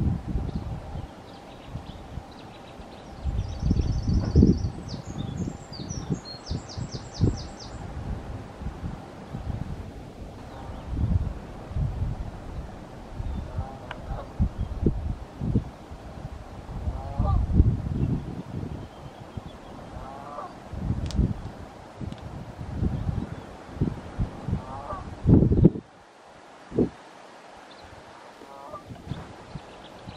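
Gusty wind noise on the microphone, with a quick high trill from a small bird about four to eight seconds in. A few short calls from distant birds follow every few seconds through the second half. The wind rumble drops away suddenly near the end.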